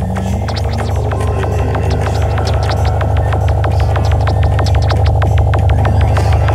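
Psychedelic trance track: a fast, rolling pulsed bassline under steady, rapid percussion ticks and sustained synth tones, gradually getting louder.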